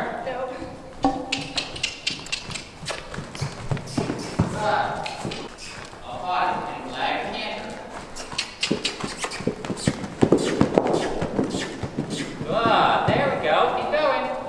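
Hoofbeats of a ridden horse on the soft dirt footing of an indoor arena, a run of irregular dull knocks that grows busiest past the middle as the horse canters, with bits of a person's voice now and then.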